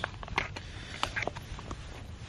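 Scattered light crinkles and clicks of a foil-lined dehydrated-meal pouch being handled and held open.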